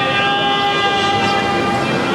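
Mariachi band music: violins and trumpets holding long, steady notes in a sustained chord during an instrumental passage.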